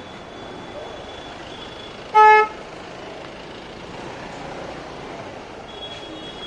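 A single short, loud vehicle horn toot about two seconds in, over steady engine and street traffic noise.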